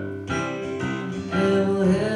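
Live piano accompaniment of a folk-style song, chords sustained and changing a couple of times, with no words sung.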